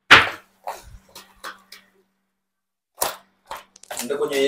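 Steel cookware clanking: one loud, sharp metallic clank right at the start, followed by a scatter of lighter clicks and knocks and two more sharp clicks near the end.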